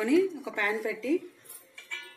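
A voice talks through the first second or so, then a nonstick frying pan and its glass lid clink a few times as they are moved on the stovetop near the end, with a brief metallic ring after the last clink.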